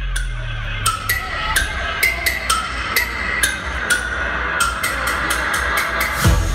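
Electronic dance music from a DJ set, played loud over a PA, in a breakdown: a stepping synth melody over thinned-out bass, with sharp percussive hits that come faster toward the end as the track builds.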